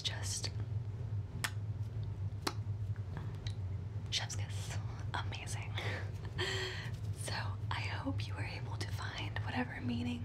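A woman whispering softly, with a few sharp clicks in the first seconds, over a steady low hum.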